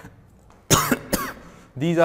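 A man coughing: two quick coughs close together, a little under a second in.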